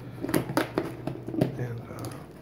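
A cardboard box being handled by hand: a few short, sharp knocks and scrapes as it is gripped and shifted on the table.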